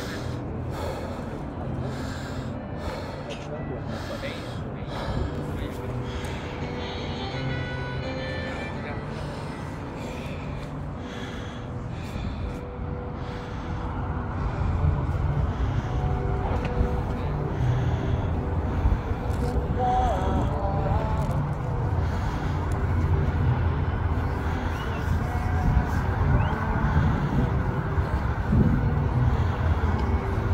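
Open-air ambience: a steady low rumble that grows louder about halfway through, with indistinct voices of people nearby.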